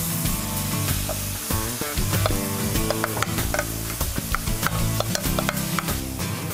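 Fresh spinach sizzling in a hot frying pan as it is stirred and tossed with a wooden spatula, with many sharp clicks and scrapes of the spatula against the pan. Background music plays underneath.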